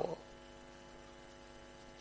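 Faint, steady electrical mains hum with a stack of even overtones.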